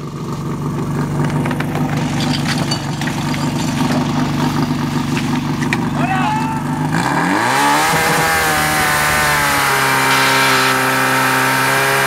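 Engine of a portable fire pump running steadily, then opened up to full throttle about seven seconds in, its pitch rising sharply over about a second and holding high. It is the pump being brought up to speed to deliver water once the suction hose is coupled.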